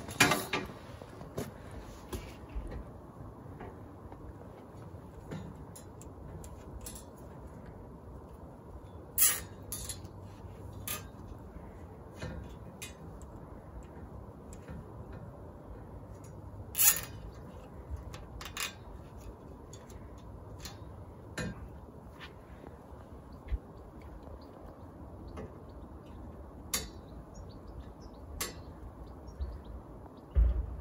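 Scattered clicks, taps and knocks of a copper-pipe loop and fiberglass pole being handled and tied together with wire, with a few louder knocks spread through.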